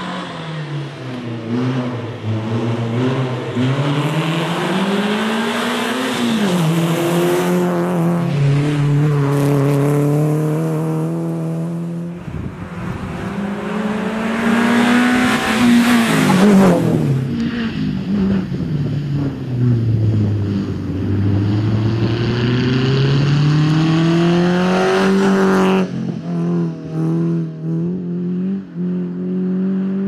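Renault Clio Sport rally car's four-cylinder engine revving hard, its pitch climbing and dropping again and again through gear changes and braking. About halfway through the car passes close by, with a rush of tyre and wind noise and a falling pitch as it goes.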